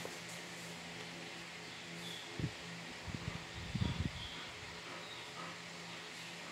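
Tarot cards being handled and laid down on a towel-covered table: soft thumps and rustles in a short cluster around the middle, over a steady low hum.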